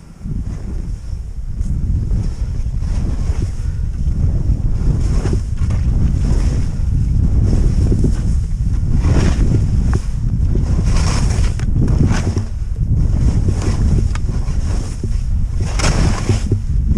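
Wind buffeting an action camera's microphone as a skier descends through powder snow: a loud, steady low rumble that comes in suddenly at the start, with several louder hissing surges as the skis cut through the snow on turns.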